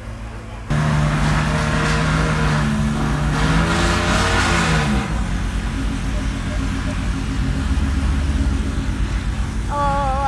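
Ferrari Monza SP2's V12 engine running. It comes in suddenly about a second in, rises and falls in pitch through a rev around four to five seconds in, then settles to a steady idle.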